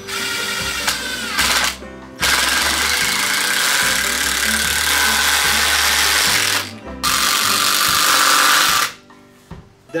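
Cordless drill driving screws into pressure-treated lumber: a few short bursts, then two long runs of the motor as each screw is sunk.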